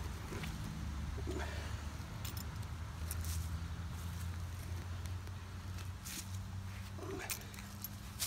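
A steady low vehicle-engine hum, with a few faint scrapes and clicks of a hand digger working gravelly soil.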